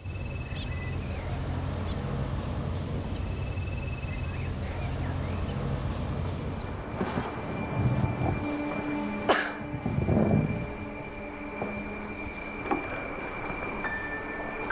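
A steady low rumble, then from about seven seconds in, cardboard boxes being shifted and set down: a run of knocks, thumps and scraping lasting about three seconds. Held background music notes sound underneath.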